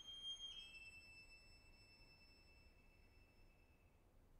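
Violin playing very softly high in its top register: a sustained note steps down slightly about half a second in and is held, fading out just before the end.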